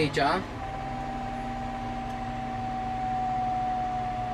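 John Deere 6135M tractor engine heard from inside the cab, running steadily at about 1900 rpm with the hand throttle pushed fully forward, held at that preset speed. A steady low hum is joined by a steady higher whine about half a second in.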